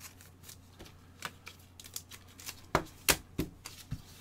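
Trading cards and their plastic holders being handled and set down on a table: a run of light clicks and taps, with a few sharper ones in the second half.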